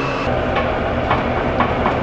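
Forklift engine idling with a low, even throb while it holds an engine hanging on its chain, with a few light clinks about halfway through and near the end.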